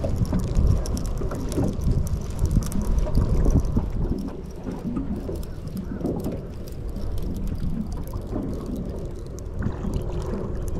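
Wind rumbling on the microphone, with choppy water lapping at a small boat and scattered light ticks.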